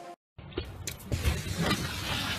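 Dance music cuts off at once, a moment of dead silence follows, then the rumble and hiss of a phone recording outdoors, with a few faint knocks.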